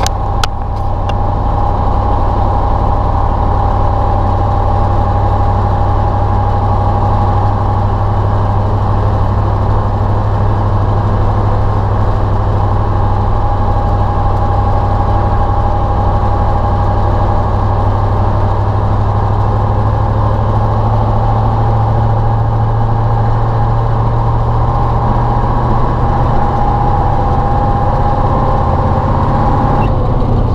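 Ural logging truck's YaMZ-238 V8 diesel running steadily under way, heard from inside the cab, a low drone with a steady whine over it. The engine note rises slightly near the end.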